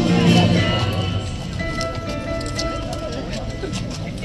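Live song performance: a woman singing, accompanied by an acoustic guitar and a Casio electronic keyboard, with held chords strongest in the first second.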